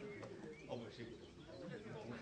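Faint, indistinct voices of people around the football pitch, with a bird calling from the trees.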